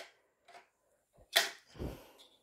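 Small plastic toy pieces being handled: mostly quiet, with a faint tap about half a second in and a short, sharp rustling noise about one and a half seconds in.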